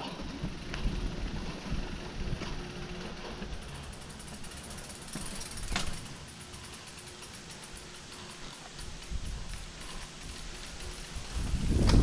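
Full-suspension mountain bike rolling down over bare rock slabs: tyre and frame rattle with scattered knocks, one sharper about six seconds in, and from a few seconds in a rapid freehub ticking as the bike coasts.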